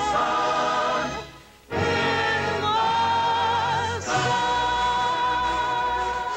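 Orchestra and chorus playing the big finale of a show tune. The music drops away briefly a little over a second in, then comes back full, with a long held note with vibrato over the band.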